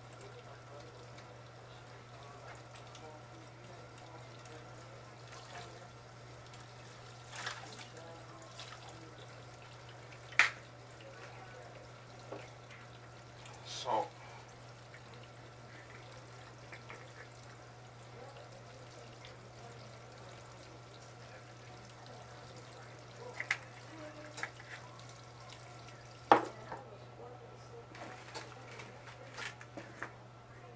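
Kitchen tap running steadily into a sink, with a few sharp knocks, the loudest about ten seconds in and again near the end, over a low steady hum.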